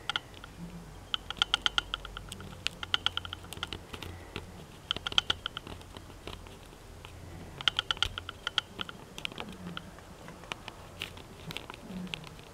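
Bursts of rapid light ticking against window glass, about a dozen ticks a second in runs of under a second, repeated several times: a wasp-like insect tapping and bumping on the pane.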